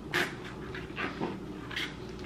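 Short, breathy puffs of a person breathing hard through the mouth with effort, about one every half second, while forcing a small kitchen knife that keeps sticking down through a watermelon's rind.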